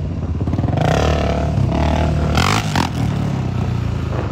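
Quad bike (ATV) engines running close by at riding speed, with two louder surges about one and two and a half seconds in.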